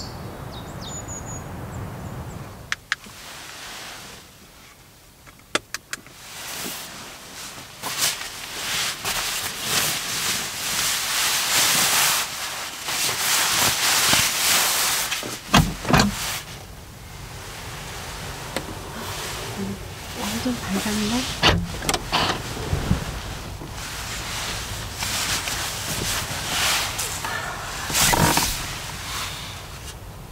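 Sleeping bag and clothing rustling as someone moves about in the back of a car, broken by several sharp clicks and knocks. A bird chirps briefly near the start.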